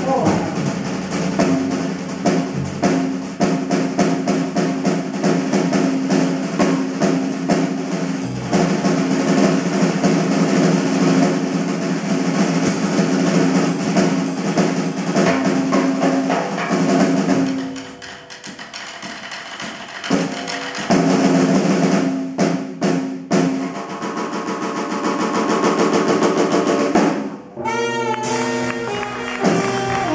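Live jazz played on tenor saxophone, double bass and drum kit, with the drummer playing busy stick work on snare and cymbals under held saxophone notes. About eighteen seconds in the band drops quieter for a couple of seconds, then comes back with sharp accented hits.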